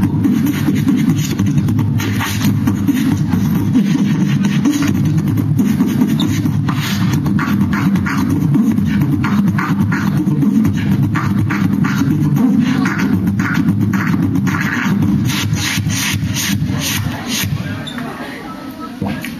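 Human beatboxing into a handheld microphone: a continuous low bass drone with quick percussive clicks and snare-like hits over it. The hits come thicker through the second half, and the routine stops just before the end.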